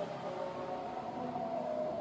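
Faint sung voice of a call to prayer, held on long notes with a step up in pitch near the end, heard at a distance or as the lingering echo in the hall.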